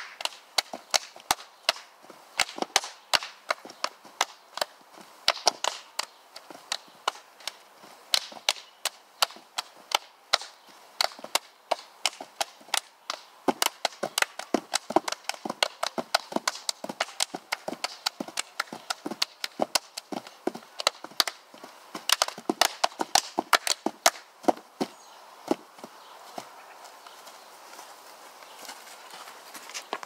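Hand claps and body slaps from two people performing a clapping and slapping dance routine: a rapid, uneven run of sharp smacks, several a second, thinning out over the last few seconds.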